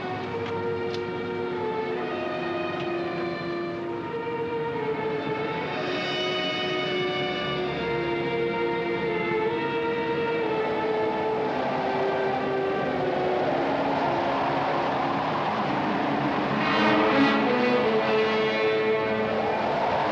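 Orchestral film score of sustained, slowly shifting chords over a steady noisy background, swelling louder about three-quarters of the way through.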